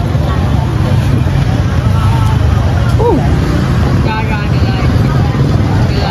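Steady rumble of street traffic, with voices chattering in the background.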